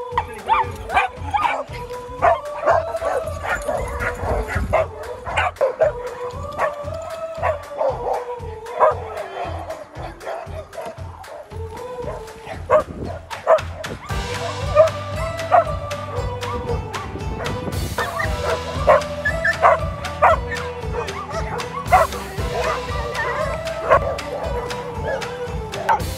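Dogs barking again and again over background music, which fills out and gets louder about halfway through.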